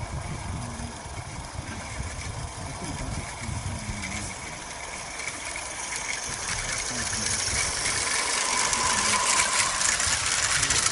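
Small gas-fired live-steam garden-railway locomotive running with a train of wagons, its steam exhaust hissing and chuffing as it comes closer. From about six seconds in it grows louder, with a rapid clicking of wheels on the track as the train passes.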